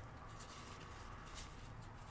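Faint rustling of hands handling things over quiet room tone.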